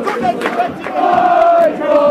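Football crowd chanting together, holding a long sung note about a second in. The sound is muffled by a finger over the phone's microphone.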